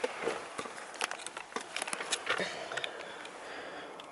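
Rustling and scattered small clicks as someone settles into a car's driver's seat, handling the camera and keys.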